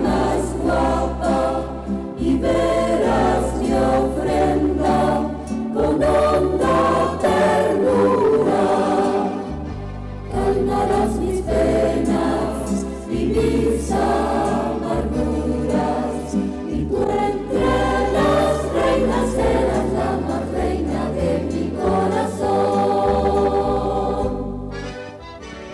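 Church choir singing a Catholic hymn in parts, over an instrumental accompaniment with a bass line that moves note by note. The music dips briefly about ten seconds in.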